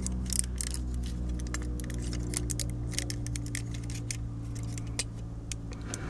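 Irregular plastic clicks and snaps from a Transformers Cybertron Soundwave action figure's parts being handled and moved as its arms are unfolded during transformation, over a steady low hum.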